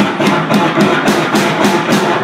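Live rock band playing loud: electric guitar over drums, with a regular drum or cymbal hit about four or five times a second.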